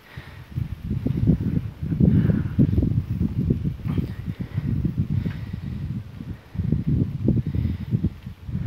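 Wind buffeting the microphone in uneven gusts, a low rumbling noise that swells and drops every second or so, from a camera carried on a moving bicycle.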